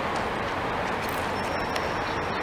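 Steady outdoor background noise with no distinct event, and a faint thin high tone entering about a second and a half in.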